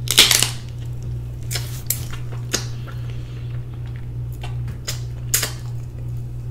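Close-miked eating sounds of a person eating oxtails and crab with her fingers: a loud wet slurp as food goes into the mouth, then scattered sharp smacks and clicks of chewing and sucking. A steady low hum runs underneath.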